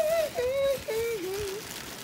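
A woman's high, wordless sing-song hum of a few notes stepping downward, with faint crinkling of a clear plastic mailer bag being handled.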